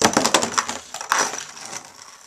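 Two metal-wheeled Beyblade Metal Fusion spinning tops clashing with each other and rattling against the walls of a plastic stadium: a rapid clatter of clicks and knocks that thins out towards the end as the tops lose spin and stop.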